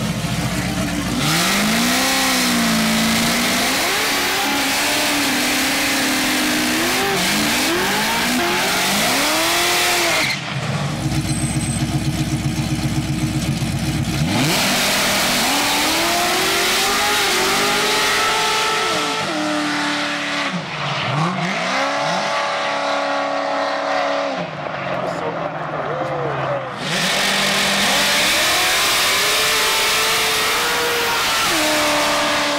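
Car burnouts: engines revving up and down over the hiss of spinning, squealing tyres, in long bursts. About ten seconds in there is a lull of a few seconds where an engine runs steadily.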